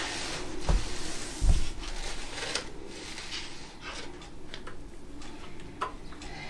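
Plastic spreader dragging across wet epoxy resin on a tabletop: faint scraping with a few light clicks, and two low thumps in the first second and a half.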